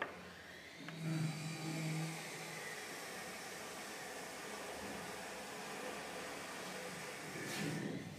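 A steady mechanical whirring noise, like a motor running, with a louder low hum about a second in. It drops away at the end.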